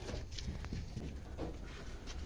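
A goat in labour being held and handled: a few scattered soft knocks and shuffles over a steady low rumble.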